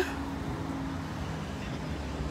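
Road traffic: a low, steady vehicle engine hum over a rumble, its pitch stepping down about a second in.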